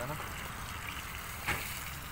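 Water pouring steadily from a hose into the muddy basin around a newly transplanted palm trunk, with a single short knock about a second and a half in.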